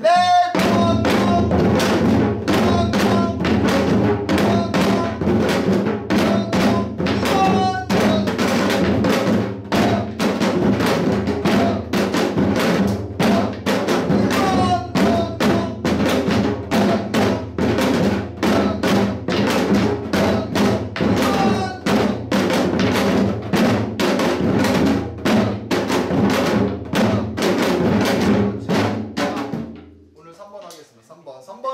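Janggu (Korean hourglass drum) played in a fast, steady hwimori rhythm. Deep strokes on the low head mix with sharp stick strokes on the high head, and the playing stops right at the end.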